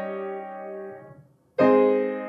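Piano block chords from an A-flat major I–V7–I–IV–I cadence, played with both hands. A chord struck just before rings and fades away about a second in. Then a new chord is struck loudly about one and a half seconds in and keeps ringing.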